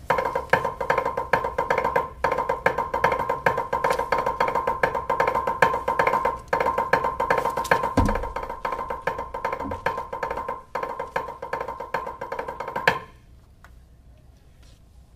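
Drumsticks on a practice pad playing a fast rudimental exercise: a dense run of sixteenth notes, triplets and dotted thirty-second notes with a clicky, pitched pad tone. Brief breaks come about two, six and a half, and eleven seconds in, and the playing stops a second before the end.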